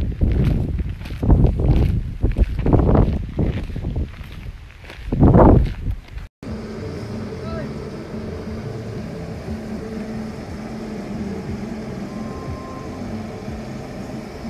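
Wind buffeting the microphone in loud, uneven gusts for about the first six seconds. After a sudden cut comes a steady, quieter hum with a few held low tones.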